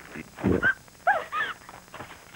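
A thud about half a second in, then three short, high yelping cries that each rise and fall in pitch, dog-like.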